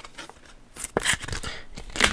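Handling of a hockey trading card: after a quiet first second, a few soft clicks and rustles as the card is slid and set down.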